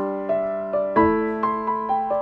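Slow piano background music: held chords with single melody notes over them, a new chord struck about a second in.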